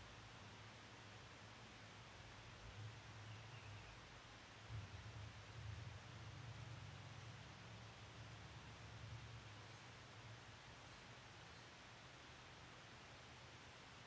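Near silence: faint steady hiss of room tone, with a faint low rumble that swells for a few seconds in the middle.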